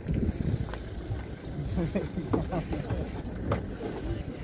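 The 1997 Toyota Cresta's boot lid is unlocked and opened, with short clicks of the lock and latch, the clearest near the end. Under it run a steady low rumble and faint background voices.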